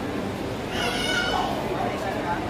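A short high-pitched wavering cry about a second in, lasting under a second, over a steady background of indistinct voices.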